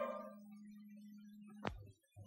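The tail of a TV commercial jingle dying away, leaving a faint steady low hum, then a single sharp click about one and a half seconds in.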